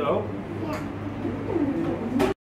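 Indistinct voices talking quietly over a steady low room hum.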